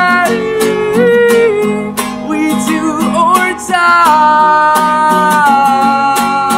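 A man singing long held notes over a strummed acoustic guitar, his pitch stepping between notes and the chords struck in a steady rhythm.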